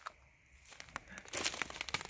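Dry debris rustling and crackling in irregular clicks as a person moves about inside the hollow base of a cypress trunk, starting about half a second in and growing busier.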